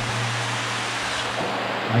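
Steady rushing noise with a constant low drone inside a corrugated metal culvert, with no distinct knocks or clicks.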